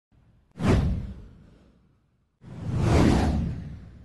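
Two whoosh sound effects from an animated logo intro. The first starts sharply about half a second in and fades away. The second swells up from about two and a half seconds in, peaks, and fades out.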